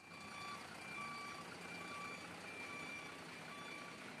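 Heavy truck's reversing alarm beeping steadily, roughly two beeps a second, over the low running of the truck's engine as it backs up.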